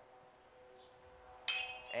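A metal baseball bat strikes a pitched ball about a second and a half in, a sudden sharp hit with a bright ringing ping, driving a line drive. Before it there is only a faint steady hum.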